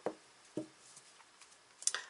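Two light taps about half a second apart as oracle cards are handled on a cloth-covered table, then a brief rustle near the end.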